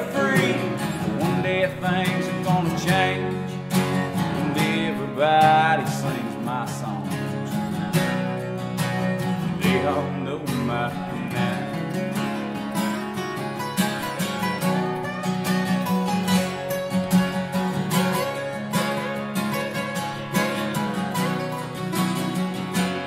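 Acoustic guitars playing an instrumental break: a strummed rhythm with a picked lead line bending between notes over it in the first few seconds.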